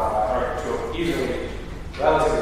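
A man speaking: continuous talk into a lecture-hall microphone.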